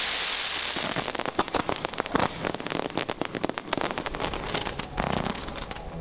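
Fireworks display going off: a hissing burst in the first second, then a dense run of rapid, irregular crackling and popping.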